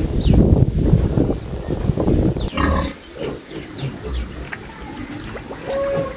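Pigs, a sow and her piglets, grunting, louder in the first half and dying down after about three seconds.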